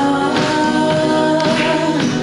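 Live worship song: a woman singing into a microphone, with acoustic guitar accompaniment and sustained sung notes.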